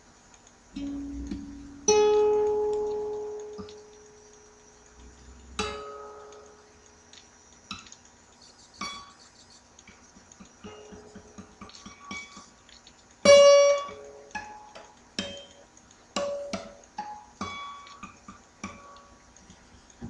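Solo acoustic guitar playing slow blues: single notes and short phrases plucked and left to ring out, with gaps between them; the loudest note comes about thirteen seconds in.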